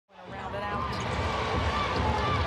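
Basketball game arena sound fading in: a ball dribbled on the hardwood court amid crowd chatter.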